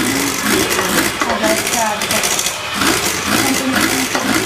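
Electric stand mixer running in a stainless-steel bowl, whipping eggs with sugar; a steady, dense whirring with metallic rattling.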